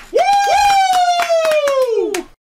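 Two men clapping their hands rapidly while one lets out a long drawn-out shout that starts high and slowly slides down in pitch, a cheer to close out.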